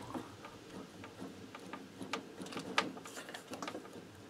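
Faint, irregular light clicks and knocks from the partly dismantled scooter being handled, the clearest knock about three seconds in.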